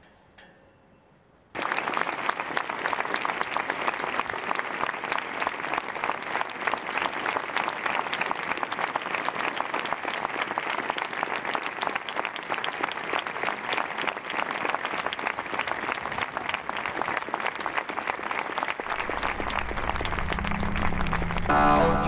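Near silence, then about a second and a half in, a large outdoor crowd breaks into sustained applause, ending a held silence of mourning. Near the end, music comes in under the clapping.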